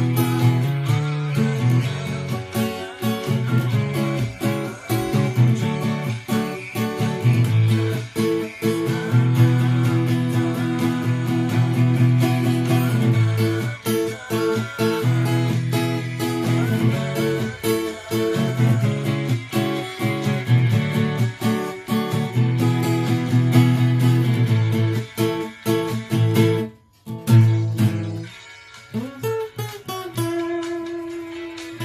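Yamaha APX 500 II acoustic-electric guitar with a capo, plucked, playing chords and melody lines. The playing breaks off for a moment near the end, then goes on more quietly.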